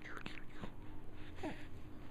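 Baby making small breathy vocal sounds while mouthing a plastic teether: a short one at the start and a falling one about one and a half seconds in.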